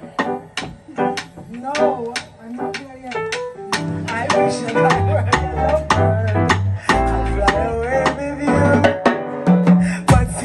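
Live jazz band of piano, upright double bass and drum kit playing the start of a song: steady sharp drum ticks with piano notes, and a walking bass line coming in about four seconds in.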